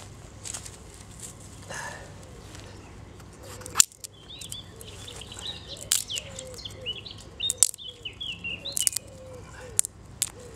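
Small birds chirping, over a run of sharp snaps and clicks from twigs being fed into a small folding wood-burning camp stove, the loudest snap just before four seconds in.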